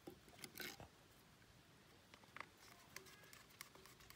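Faint clicks and taps of a screwdriver and hands working the terminal box cover of an electric water pump. The clicks are loudest about half a second in, with a few more later.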